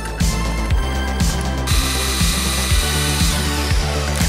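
Background music with a steady beat, about two beats a second. Over it, from a little under two seconds in until near the end, a power drill bores a new pivot hole through a steel brake-pedal arm.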